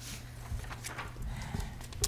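A few scattered soft knocks and thumps over a steady low hum, the strongest about half a second in and again near a second and a half.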